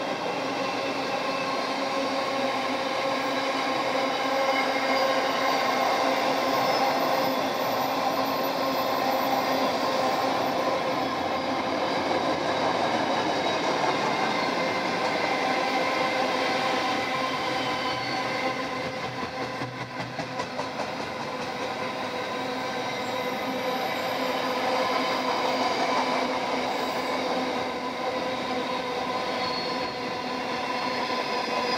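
Container wagons of a long intermodal freight train rolling past at speed, steel wheels running on the rails, with steady high squealing tones from the wheels running through. The sound eases briefly about twenty seconds in and then builds again.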